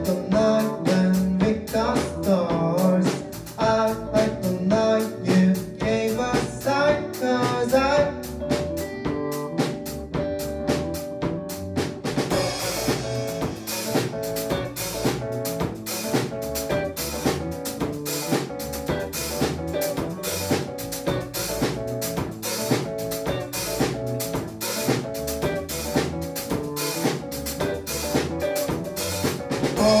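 Live rock band playing an instrumental passage: electric guitar over drum kit and bass. About twelve seconds in the drums come in fuller, with steady cymbals.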